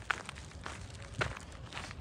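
Footsteps on freshly mown grass, evenly spaced at about two steps a second.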